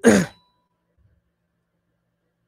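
A man's voice: one short, breathy spoken syllable, "wa", falling in pitch, at the very start.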